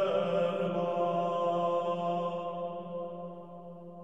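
Cistercian plainchant sung by a vocal ensemble, holding a long final note that slowly fades away.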